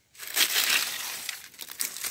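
Dry fallen leaves crunching and crackling as a hand grabs and moves them close to the microphone. The sound is densest in the first second and thins into a few separate crackles near the end.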